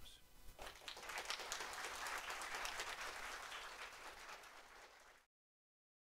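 Audience applauding: many hands clapping, starting about half a second in and cut off abruptly a little after five seconds.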